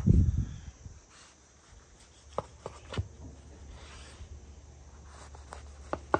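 A low thump at the start, then faint scraping with a few light clicks as a knife saws through a cheeseburger and its bun on a wooden cutting board.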